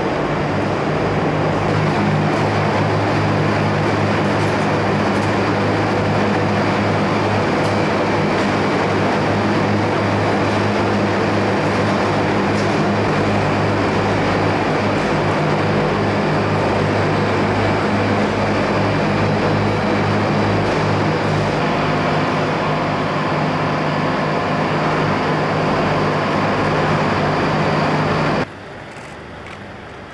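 Olive oil mill machinery running steadily inside the factory: a loud, even mechanical drone with a constant low hum. Near the end it cuts off suddenly to a much quieter background.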